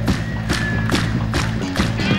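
Live rock band playing an instrumental passage: a steady drum beat over a repeating bass line, with a short held high note about half a second in.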